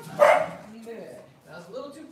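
A dog barks once, loud and sharp, just after the start, then gives a couple of quieter barks near the end.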